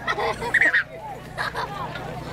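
A few short honking bird calls, one pair close together about half a second in and another near the end.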